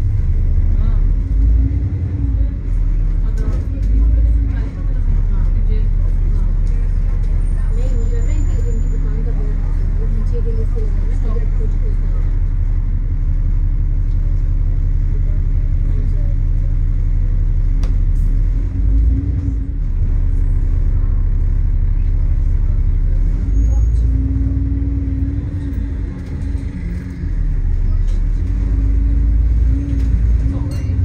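A London double-decker bus's engine running and road rumble heard from inside the bus as it drives, steady with small rises and falls in engine pitch.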